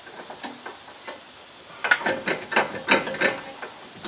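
Metal clicks and knocks of hand tools and hardware at the strut-to-knuckle mount, a quick irregular cluster of sharp clinks in the second half after a quiet start.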